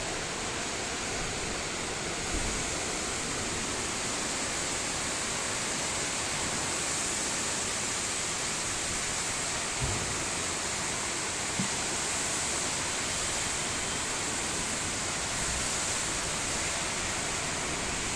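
Petrol running out of a corrugated hose and splashing onto a concrete floor, a steady hiss; it is being poured out to check the fuel for water.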